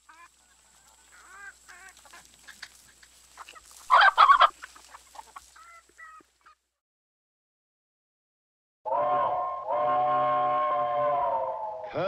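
A brief loud honk-like sound effect about four seconds in, among fainter clicks and blips. After a couple of seconds of silence, a steam locomotive's chime whistle blows two long, steady, several-note blasts, the second dipping slightly in pitch near the end.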